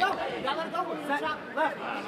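Several people's voices chattering and calling out at once in a large hall.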